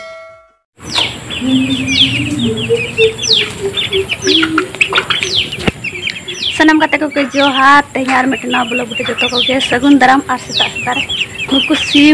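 Young chickens peeping over and over, each call a quick falling note, with lower calls mixed in.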